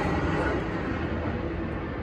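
Steady low mechanical rumble with a low hum under it, easing off slightly in level.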